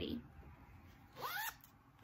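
A fabric bag's zipper pulled once, a short zip about a second in that rises in pitch and lasts under half a second.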